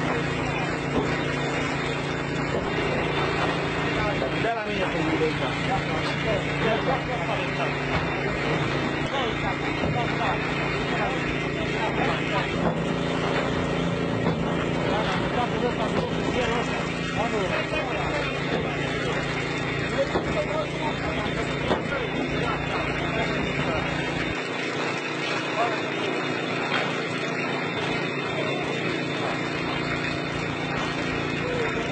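A motor hums steadily throughout, with people talking over it.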